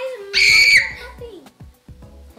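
A girl's high-pitched squeal of excitement, held for about half a second as the balloons inflate, over quieter background music.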